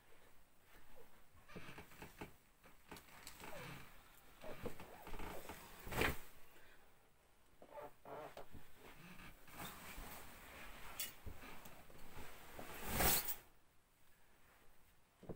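Coats on hangers dropped in armfuls onto a bed: soft rustling of fabric and light knocks, with a louder thud about six seconds in and again near the end.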